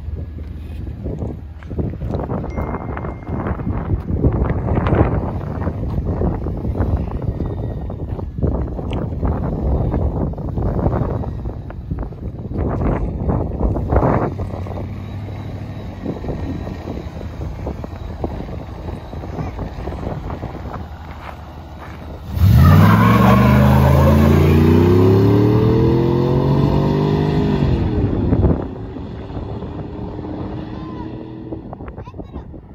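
Chevrolet S10 pickup being test-driven: an uneven engine rumble with crackles while it moves at low speed. About two-thirds in comes a loud full-throttle pull, the engine pitch climbing steadily for about five seconds, then falling and cutting off as the throttle is lifted.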